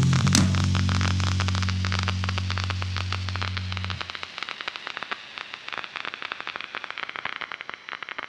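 Final chord of a band's song ringing out: bass and electric guitars hold a low chord under cymbal crashes, then cut off about halfway through. After the cutoff only a crackling hiss remains, fading away.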